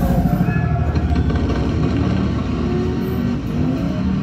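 Arcade racing game cabinet playing its car engine sound effects over background music through its speakers.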